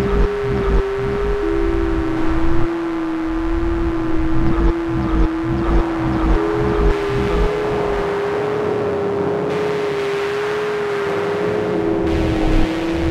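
Algorithmic electroacoustic computer music made in SuperCollider. A held, slightly wavering tone steps down in pitch about a second and a half in, then back up about halfway through, over irregular low pulses.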